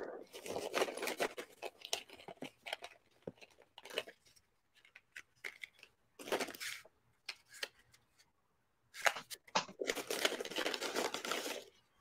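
Rustling and scratching of something being handled close to the microphone, in irregular bursts with a few pauses and a busier stretch near the end.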